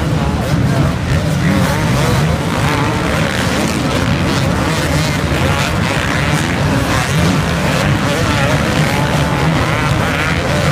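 A pack of motocross bikes revving hard as they climb a sand dune, many engine notes rising and falling over one another in a continuous din.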